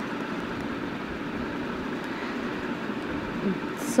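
Steady background noise with no distinct events, an even hiss-like hum.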